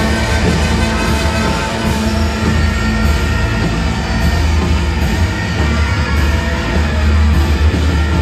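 A loud, dense live rock band playing together with a brass band of saxophones, trumpets and trombones, over heavy bass and drums.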